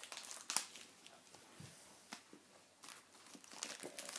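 Faint crinkling and rustling of plastic toy packaging being handled, with a few sharp clicks scattered through it.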